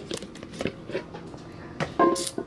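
Handling noise from a phone camera moved against clothing: a few light knocks and clicks over soft rustling.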